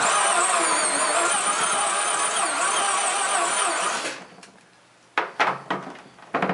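Cordless drill with a multi-step bit running for about four seconds, biting into the plastic tray to widen a bulkhead hole, then winding down. A few short knocks follow about a second later.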